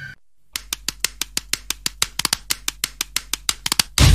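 Sharp, dry percussion taps in a quick rhythm, about seven a second and bunching closer toward the end, over a faint low hum: the percussion opening of a gaana film song.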